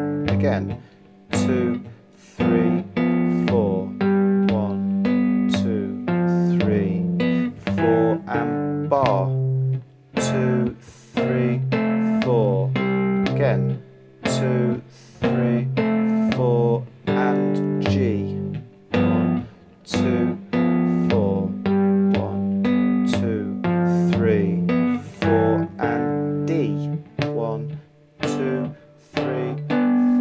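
Three-string cigar box guitar in open G (G-D-G) played fingerstyle: a 12-bar blues in a steady picked rhythm of fretted two-note chord shapes over the open bass string. There are a few quick upward slides on the fretted notes.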